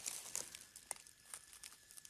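Faint crackling and rustling of dry leaf litter, pine needles and soil as hands break open a clump of earth, with a few scattered sharp clicks.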